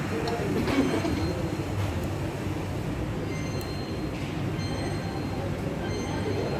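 Steady low rumbling room noise of a restaurant, with a few faint clinks.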